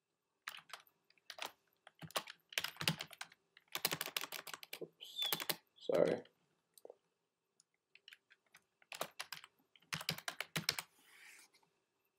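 Typing on a computer keyboard: short runs of keystrokes with pauses between, busiest about three to five seconds in and again about nine to eleven seconds in.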